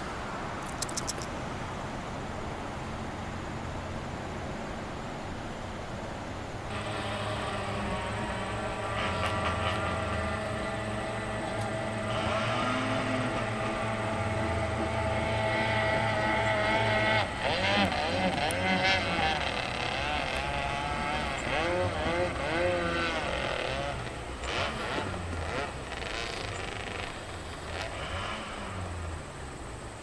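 A motor engine running with a steady hum that comes in about a quarter of the way through, its pitch wavering up and down in the second half. A couple of brief clicks sound about a second in.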